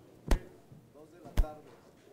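Two sharp knocks about a second apart, with faint voices in between.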